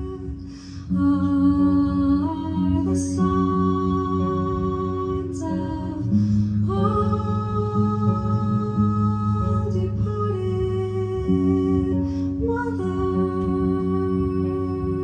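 A slow song performed live: a voice singing long held notes over an electric guitar, the phrases changing every few seconds.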